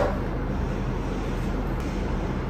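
Steady background noise in a pause between words: an even hiss over a faint low hum, with no distinct events.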